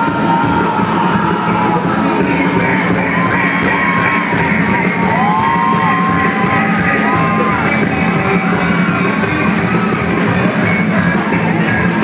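Loud live pop music from a band on stage, with male voices singing over it.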